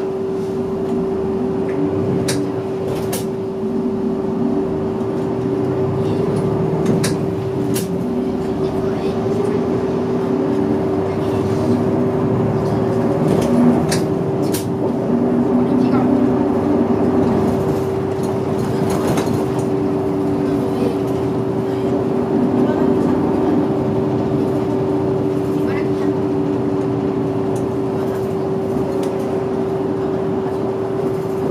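City bus engine and drivetrain heard from inside the cabin as the bus moves off from slow traffic and drives on, the engine note rising and falling, with a steady whine throughout and a few sharp rattling clicks.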